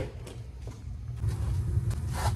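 A low, steady rumble of basement heating equipment running, starting abruptly at the start, with a few faint knocks over it.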